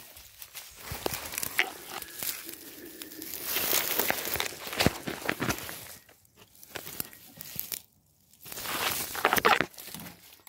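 Footsteps through tall grass and dry weeds, with rustling and crackling of stalks close to the microphone. The sound drops out briefly about eight seconds in.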